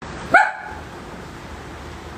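A single short, high-pitched bark about a third of a second in, over a steady low background hum.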